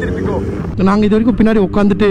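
Steady low engine hum from a moving motorcycle in traffic. From about a second in, a man's voice comes over it, louder than the engine.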